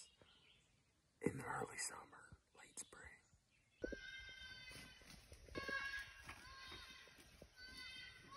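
Electronic predator caller playing a fawn-in-distress recording: long, wavering, high-pitched bleats one after another, starting about four seconds in, after a brief whisper.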